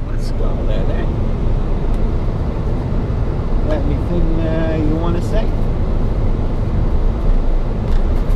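Steady road and engine noise inside a moving vehicle's cabin, a loud low rumble.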